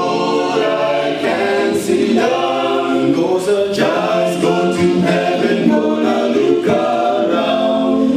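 A male a cappella group singing a gospel song in close harmony, several voices together with no instruments.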